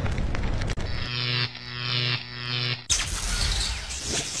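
A run of edited-in sound effects: a dense crackling noise, then a steady low tone held for about two seconds, then a sudden loud rushing hiss about three seconds in.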